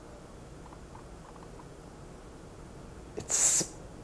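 Emerson Designer ceiling fan's K55 motor running at medium speed on a solid-state control, so quiet that it gives no hum, only a faint steady whoosh. About three seconds in there is a short hiss.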